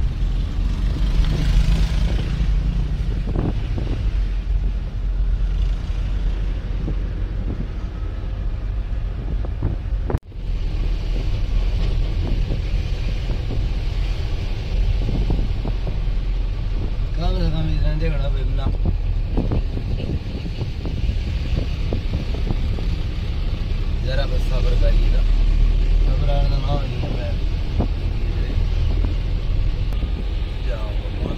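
Engine and road noise inside the cab of a moving Mahindra Bolero pickup: a steady low rumble with wind hiss, broken by an abrupt cut about ten seconds in.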